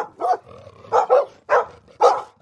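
A dog barking repeatedly, about five short barks in quick succession.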